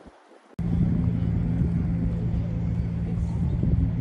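An engine hum with a low rumbling noise, cutting in abruptly about half a second in and then running steadily.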